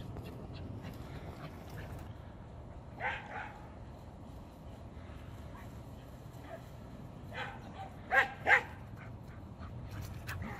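A dog barking in short, separate barks: two about three seconds in, one around seven and a half seconds, then the two loudest close together near the end.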